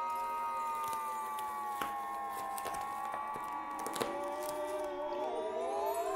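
Computer-generated electronic soundscape from Max software: two sustained synthetic tones that sink slowly in pitch, with more gliding tones bending in near the end and a couple of faint clicks.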